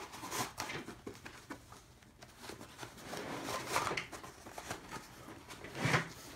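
Rifle magazines being pushed into the nylon webbing loops of a soft rifle case: irregular rustling and scraping of fabric, with a sharp click at the start and another just before the end.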